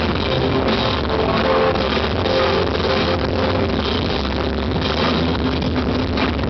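Rock band playing an instrumental stretch between vocal lines: electric guitars and bass over a steady drum beat, with no singing.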